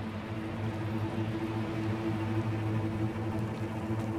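Background music: a low, steady held drone of a few sustained low notes, with no beat.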